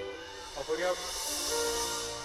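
Live band's keyboard holding soft sustained chords between songs. A short voice-like cry comes just before the middle, then a high hiss swells up and fades over about a second.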